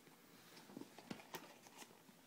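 Near silence with a few faint clicks: hands lifting a small metal atomizer head out of its packaging insert.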